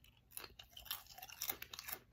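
A person chewing something crunchy: a string of faint, irregular crunches.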